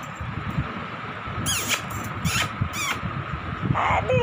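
Dogs playing close to the phone: three short, high squeaks, each falling in pitch, over irregular thumps and rustling.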